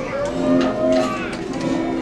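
Live music from a children's guitar ensemble: held notes, with a tone sliding upward through the first second.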